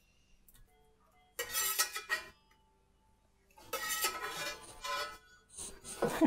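Spatula scraping and clinking against a cast iron skillet, clearing out the last scraps of scrambled egg, in two bouts: one a second and a half in, a longer one after about three and a half seconds.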